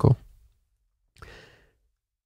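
A man's single short, soft breath a little over a second in; the rest is near silence, apart from the tail end of a spoken word at the very start.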